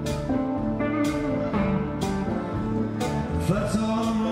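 A live band playing a slow country-blues groove: guitars, upright double bass and drums, with a beat falling about once a second.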